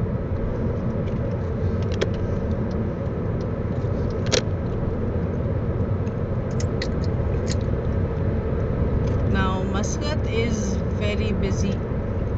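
Car driving at expressway speed, heard from inside the cabin: a steady rumble of tyres on the road and the engine running, with a few light clicks.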